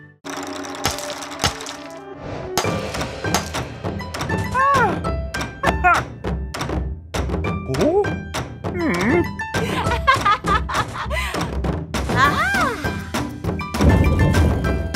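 Cartoon soundtrack: music with a quick run of thunks, and wordless cartoon voices sliding up and down in pitch.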